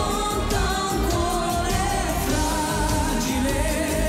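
A live pop ballad: a man and a woman singing together into microphones over a band with a steady beat.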